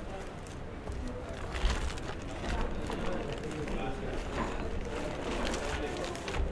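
Indistinct voices murmuring in the background, too low to make out words, with a few faint clicks.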